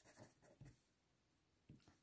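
Faint scratching of a felt-tip marker writing on paper, a few short strokes in the first second, then near silence.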